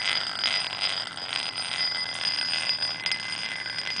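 Metal ball rolling around the inside of a small glass bowl, a continuous high ringing rattle against the glass. The ball is coasting down with the coil's power off.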